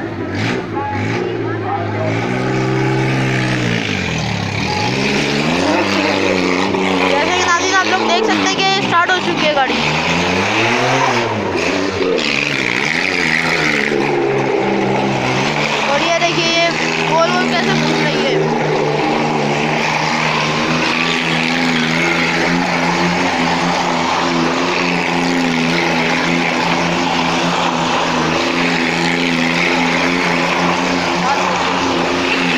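Car engine revving up and down several times, then running at a steady pitch as the car circles the wall of a wooden well-of-death drum.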